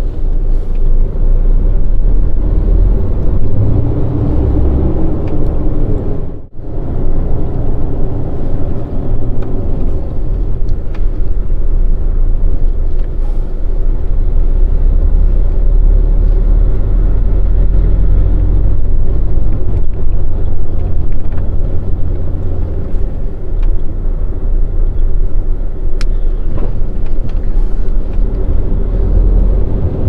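Volvo truck's diesel engine running steadily while the rig is under way, heard from inside the cab as a deep rumble. The sound briefly cuts out about six and a half seconds in.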